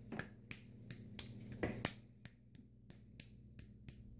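Hands slapping and patting a lump of damp modelling clay between the palms to shape it into a ball: a quick, uneven series of soft slaps, about three a second.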